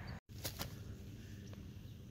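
Faint outdoor background noise with a brief total dropout about a quarter second in, where the recording is cut, and a few faint clicks after it.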